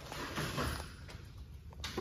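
Quiet indoor background noise: a faint low hum with a short click near the end.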